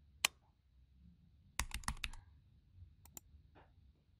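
Faint computer mouse clicks and keyboard keystrokes: a single click, then a quick run of keystrokes about one and a half seconds in, then two more clicks near the end.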